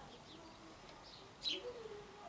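Faint outdoor bird calls: a low pigeon cooing with a few small-bird chirps. A short sniff comes about a second and a half in as the beer is smelled.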